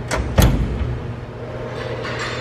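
The two windowed front doors of a Chevalier SMART-B818IV grinder's enclosure shutting one after the other: two knocks about a quarter-second apart just after the start, over a steady low hum.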